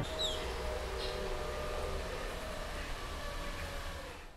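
Quiet outdoor background noise: a steady hiss with a faint held tone under it, and one short, high, falling chirp near the start.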